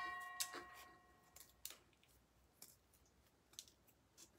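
A metallic ring fading out over about a second, then a few faint, sparse clicks of scissors being worked at ribbon ends; otherwise near silence. The scissors are dull and cut the ribbon poorly.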